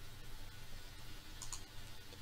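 A single faint click at the computer, about one and a half seconds in, as the slideshow is advanced to the next slide. Under it is a steady low hum.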